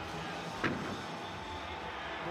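A single thump about two-thirds of a second in: a gymnast landing a tumbling pass on the sprung floor-exercise mat. Steady arena room noise runs underneath.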